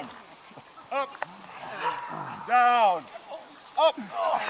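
Men groaning with strain while holding push-ups on one leg: a short groan about a second in, a longer drawn-out one around the middle, and another short one near the end.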